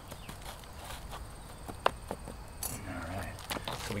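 Hands working in gravelly bonsai soil, pulling a dead tree and its roots out: soft scraping and rustling with a few sharp clicks and knocks, one about two seconds in.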